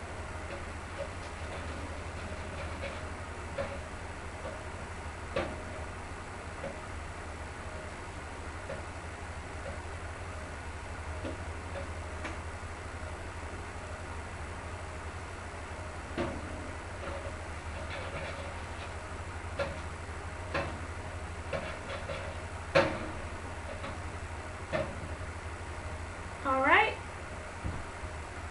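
Scattered light taps and clicks of a spatula against a foil-lined baking pan in an open oven, pressing a shrinking Shrinky Dink flat, over a steady low hum. The loudest tap comes near the end.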